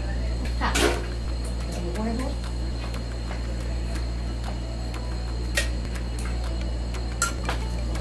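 Kitchen handling sounds as sour cream is spooned from its tub into a blender jar: a few brief knocks and clinks over a steady low hum.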